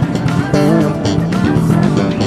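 OS-Bass 5 prototype five-string electric bass played slap style, with thumb slaps and popped notes, over a pop backing track.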